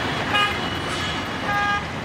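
Busy road traffic with engines running, and a vehicle horn tooting twice: briefly about a third of a second in, then a little longer about a second and a half in.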